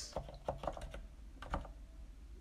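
Typing on a computer keyboard: a handful of quick, irregular keystrokes entering a short word, the last one about one and a half seconds in.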